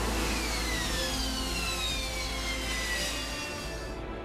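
AV-8B Harrier II's Rolls-Royce Pegasus turbofan roaring on the deck during a vertical landing. Its high whine falls steadily in pitch over about three seconds as the engine is throttled back at touchdown.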